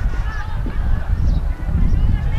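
Distant shouts and calls from players across a football pitch, short and scattered, over a steady low wind rumble on the microphone.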